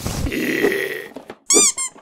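Cartoon-style sound effects: a rough, raspy sound for about a second, then two quick squeaks that rise and fall in pitch.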